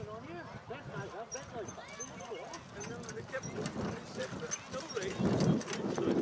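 Hoofbeats of a harness-racing horse jogging across grass pulling a sulky, heard as a run of soft, quick clicks. Low chatter of spectators goes on under it, with voices growing louder near the end.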